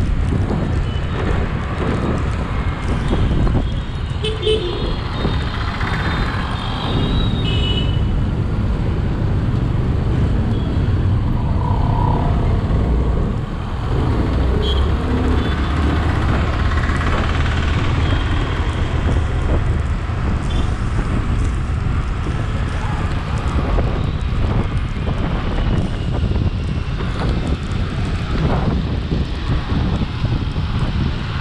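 Steady wind rumble on the microphone and a running motorcycle engine while riding through city traffic, with other vehicles' horns tooting briefly a few times, mostly in the first several seconds.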